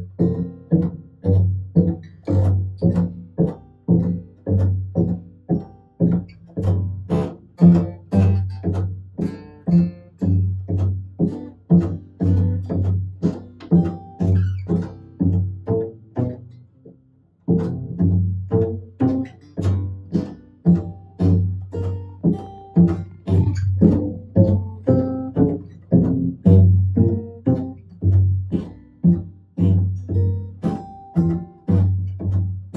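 Upright bass (double bass) plucked pizzicato, playing a blues line as a steady train of notes at about two a second. It drops out briefly a little past halfway, then picks up again.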